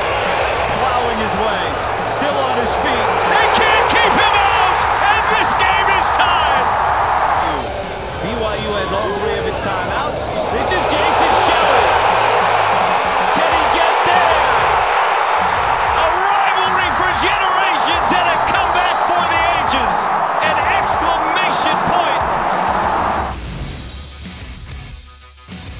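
Large stadium crowd cheering loudly and continuously. The roar dips for a couple of seconds about eight seconds in, then builds again, and it cuts off just before the end.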